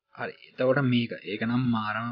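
A man's voice talking in short phrases.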